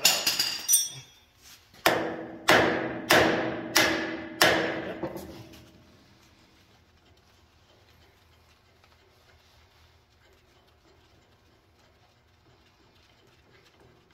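Hammer blows on steel at the lift-assist cylinder mount of a John Deere 8650 tractor, knocking the cylinder's bolt loose. Three quick strikes come first, then five evenly spaced ones about two a second, each leaving a short metallic ring. After that there is only a faint low hum.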